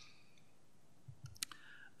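Near silence with faint room tone, then a few faint sharp clicks about a second and a half in.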